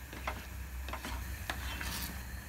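A pan of thick puréed broccoli soup coming to the boil: a handful of irregular soft clicks and pops over a low steady hum.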